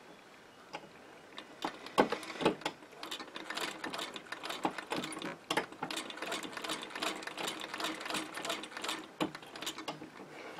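Singer 15K treadle sewing machine stitching through a sock held in a stocking darner: rapid clicking of the needle and mechanism starts about two seconds in and stops just before the end. It is a short run of stitches backwards and forwards to anchor the thread.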